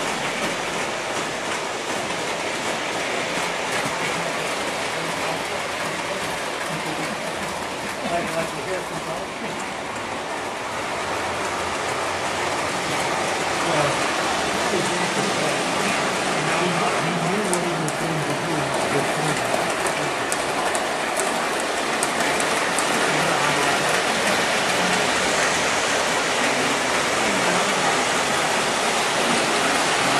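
O-gauge model train running on three-rail track, a steady rolling rumble and hiss of wheels and motor that grows a little louder about halfway through.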